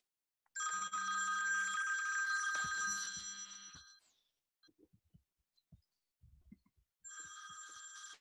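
A telephone ringing with a bright, many-toned ring. It lasts about three seconds, pauses with a few faint clicks, and starts ringing again near the end.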